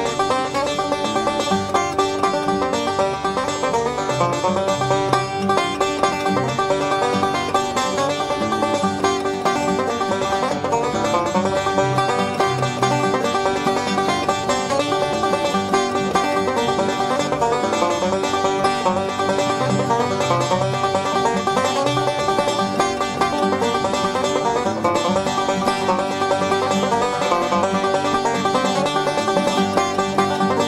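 Banjo playing an instrumental tune as a continuous, unbroken run of picked notes.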